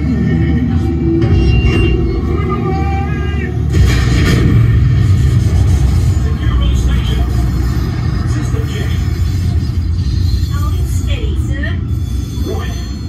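The submarine ride's soundtrack playing in the cabin: a deep, sustained rumble that surges about four seconds in, under ride music and character voices, the sound effect of an undersea eruption lighting the water orange.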